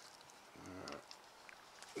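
Near silence: quiet room tone with a man's brief hesitant "uh" about halfway through and a few faint clicks near the end.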